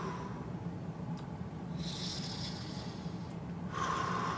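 A person's slow, deep breathing during a yoga breath count, heard as breathy hissing that comes and goes: one breath fading out at the start, another around two seconds in, and a third beginning near the end.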